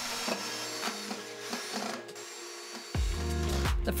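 Background music, with a cordless drill driving pocket-hole screws into wood for about the first two seconds. A bass beat comes in about three seconds in.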